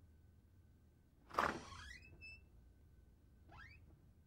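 A door being opened: a sudden clunk of the latch about a second and a half in, followed by short, rising squeaks of the hinge, with one more squeak near the end.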